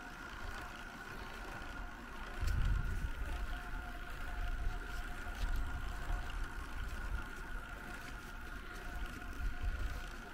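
Wind buffeting the microphone of a camera on a moving bicycle, a low rumble that swells about two and a half seconds in, over a faint steady high whine.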